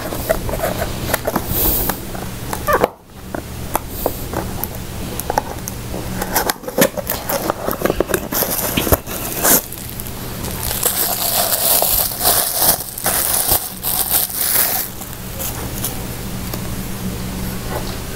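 Packaging rustled and crackled by hand as a mug is unwrapped: irregular crackles and clicks, with a denser stretch of rustling from about eleven to fifteen seconds in. A steady low electrical hum runs underneath.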